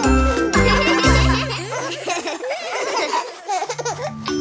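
The end of a children's song, with a few last bass notes, then animated characters laughing and giggling for about two seconds.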